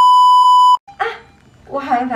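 Test-card tone: a steady high beep played over television colour bars, cut off abruptly just under a second in, followed by a woman speaking.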